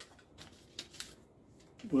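Plastic egg being pried open and a paper slip pulled out of it, giving a few small clicks and crinkles.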